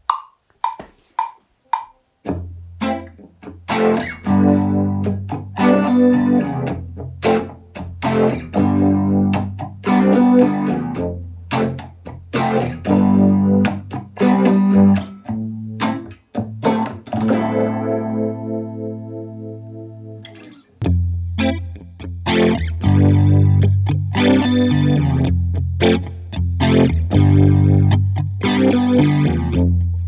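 Telecaster-style electric guitar played through GarageBand's amp simulator with compressor and echo pedals: chords and riffs with a light crunch. The playing starts about two seconds in, after a few light taps. Near the middle a chord rings out and fades, then playing starts again abruptly with a duller top: the recorded take playing back.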